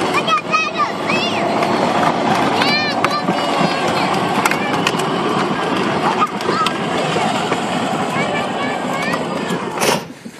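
Battery-powered ride-on toy Jeep running, its plastic wheels rolling on asphalt with a steady rumble. Near the end it knocks into a parked car's bumper, and the rolling noise cuts off suddenly.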